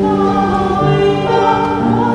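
A woman singing a song in Quechua, accompanied by a grand piano playing sustained notes.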